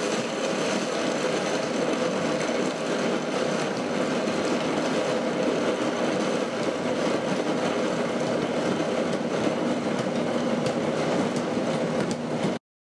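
Ninja Foodi blender motor running steadily on its low setting, its blades grinding baked almonds into a coarse meal while the tamper presses the nuts down into them.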